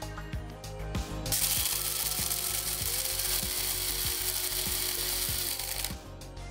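Krups electric blade coffee grinder running while it grinds whole coffee beans. It starts suddenly about a second in and cuts off just before the end, over background music with a steady beat.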